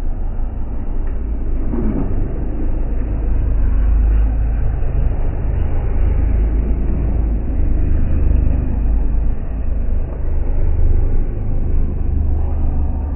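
BTCC touring cars passing one after another, their engine and track noise slowed down into a deep, continuous rumble.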